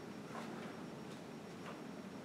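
A few faint, irregular ticks and light rustles from the pages of a bird field guide being handled and turned, over quiet room noise.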